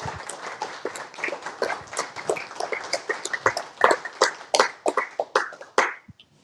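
Scattered applause from a small audience, the individual hand claps distinct and irregular, several a second; it cuts off suddenly at the end.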